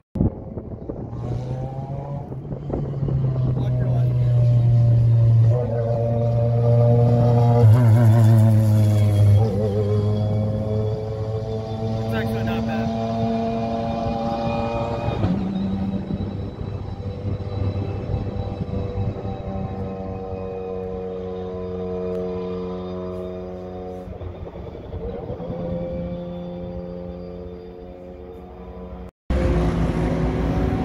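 Car engines running on a road-racing circuit: a steady drone whose pitch slowly rises and falls as the cars pass, fading near the end.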